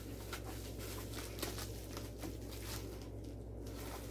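Faint rustling and a few light clicks of paper and packaging being handled as mail is unpacked, over a steady low hum.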